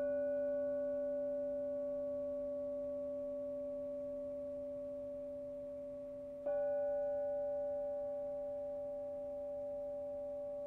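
Hand-held Paiste sound plate struck with a mallet, ringing with a clear, slowly fading tone made of several pitches. It is struck again about six and a half seconds in, and the ringing swells back up.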